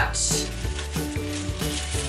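Stiff leaves and stems of a bunch of protea flowers rustling and crackling as the bunch is lifted from a pile of foliage, over soft background music.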